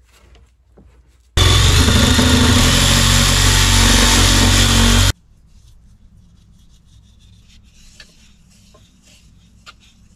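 A power saw cutting through PVC drain pipe, starting abruptly a little over a second in, running steadily for about four seconds and cutting off suddenly. Afterwards there are faint clicks and rubbing as the cut pipe and fittings are handled.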